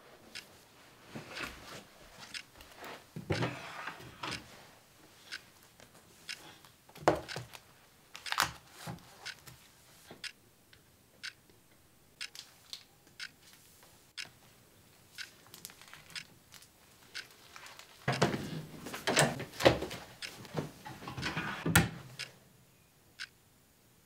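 Rustling and knocking of papers and school things being handled on a wooden desk, with scattered small clicks. A louder stretch of rustling and thuds comes about 18 to 22 seconds in.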